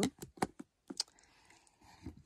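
Light plastic clicks and taps of body butter tubs being handled and stacked, a quick run of about five in the first second.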